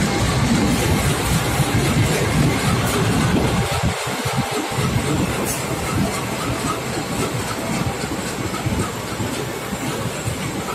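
A CC 201 diesel-electric locomotive passes close with its engine running, then passenger coaches roll by, their wheels rumbling on the rails.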